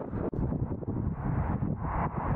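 Strong wind buffeting the camera's microphone, a dense low rumble that briefly drops out about a third of a second in.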